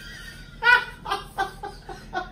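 Hearty laughter from men, a run of short, quick 'ha' bursts starting about half a second in and trailing off.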